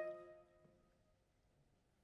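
A held chord from a live wind band breaks off and rings away in the hall's reverberation over about a second, leaving near silence.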